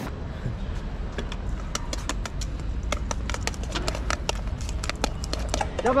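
Utensils clicking and scraping against a stainless steel mixing bowl as cold noodles are tossed with sauce: a rapid, irregular clatter over a low steady rumble.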